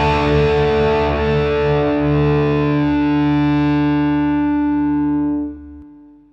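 The final chord of a punk rock song: a distorted electric guitar chord struck and left to ring, its brightness slowly fading. It drops off sharply near the end as the song finishes.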